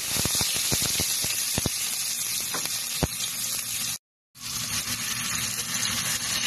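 Chopped tomato, onion and garlic sautéing in hot oil in a pot, sizzling, with crackling pops in the first two seconds. The sound breaks off briefly at about four seconds, then the sizzling resumes.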